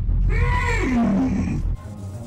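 A Tyranid monster's growling call from the animation: one long call that sinks in pitch, over a low rumble, cutting off suddenly near the end.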